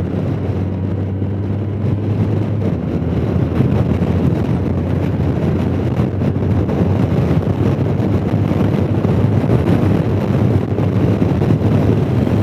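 Honda Gold Wing Tour cruising at highway speed: a steady rush of wind on the microphone over the low, even drone of its flat-six engine, the drone clearest in the first few seconds.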